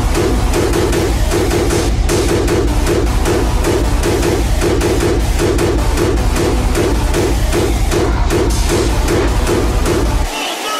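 Hard dance electronic music from a hardstyle mix: a fast, steady kick and heavy bass under a repeating mid-range riff that pulses about twice a second.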